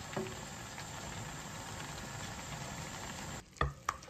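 Pan-fried tofu sizzling in a frying pan with a little sauce, a steady hiss. Near the end it cuts off, followed by a couple of sharp knocks.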